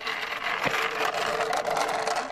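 A small wheeled board, a ski-jump take-off trainer, rolling fast across asphalt: a steady rolling noise with one knock about two-thirds of a second in.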